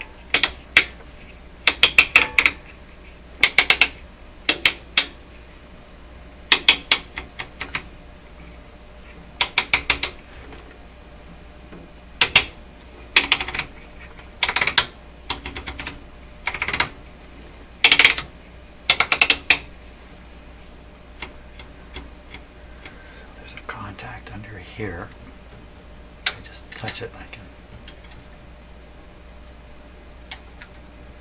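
A rotary switch on a Stark Model 10-A RF signal generator being turned through its detent positions, clicking in quick clusters every second or two. The clicks stop after about twenty seconds, leaving softer handling noises.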